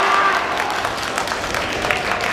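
Spectators clapping, with some voices in the crowd, as a sumo bout ends.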